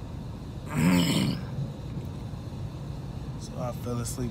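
A man's short, loud voiced grunt about a second in, over the low steady rumble of a car's cabin.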